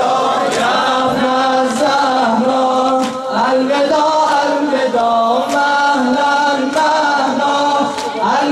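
A man chanting a noha, a Shia mourning lament, in long held melodic lines, with sharp slaps of sinezani chest-beating about every second or so.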